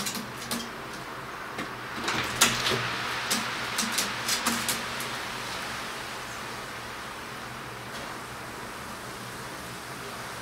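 Wood pigeon pecking grain inside a glass jar: a run of sharp clicks and taps of beak on pellets and glass, busiest in the first half, over a steady background hiss.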